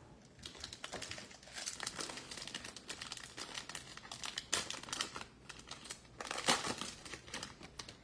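Foil wrapper of a 2022 Bowman baseball card pack being torn open and crinkled by hand, in irregular crackles that are loudest around the middle and again near the end.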